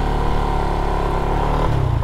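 Honda RS150R underbone motorcycle's single-cylinder engine running at a steady cruise, its note shifting lower near the end.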